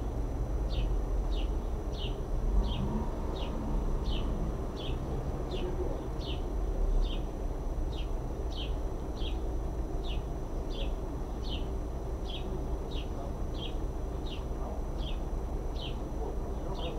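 A bird calling with a short, high chirp that slides downward, repeated steadily about every half second, over a low rumble of background noise.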